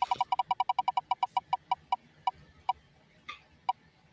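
Ticking of an online prize-wheel spinner as the wheel spins down: fast clicks at first, slowing steadily and stopping near the end as the wheel comes to rest.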